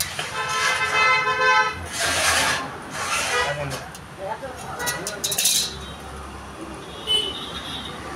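A vehicle horn honks, one steady note lasting about a second and a half near the start. After it come short scrapes and a few sharp clinks as mitred pieces of steel square tube are pushed together on a concrete floor.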